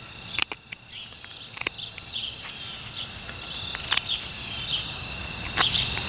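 Small multitool knife blade cutting a notch into a thin wooden stick: a few short, sharp snicks at irregular intervals as the blade bites the wood. Steady high-pitched insect chirping runs underneath.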